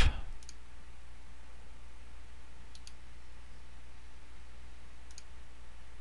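Computer mouse clicking three times, a couple of seconds apart, each a faint press-and-release, over a steady low hum of microphone noise.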